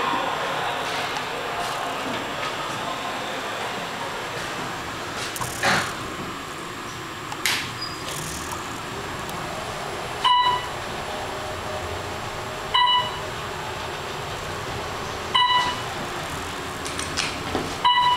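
Otis Gen2 traction elevator car riding down with a steady rumble, with a couple of sharp clicks about six and seven and a half seconds in. In the second half, four short electronic beeps sound about two and a half seconds apart as the car passes floors on its way down.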